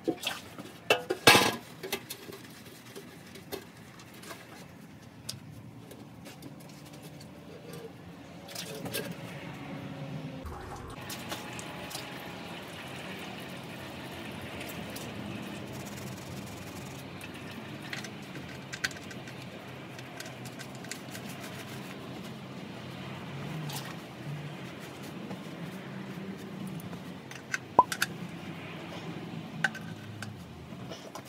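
Engine oil draining from a small truck's oil pan into a catch pan, a steady pouring rush that sets in about ten seconds in and runs on. Metal clinks of a wrench on the drain plug are heard in the first couple of seconds and again near the end.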